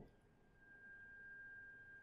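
Near silence, with a faint steady high tone that comes in about half a second in.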